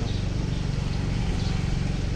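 A vehicle engine running steadily, heard as a constant low hum.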